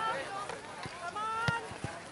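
Outdoor shouting from players and spectators at a youth football match, with a sharp thud right at the start and another about one and a half seconds in.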